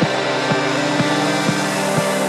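Electronic dance music from a DJ mix: a steady four-on-the-floor kick drum about twice a second under a sustained synth drone, with the deep bass cut out.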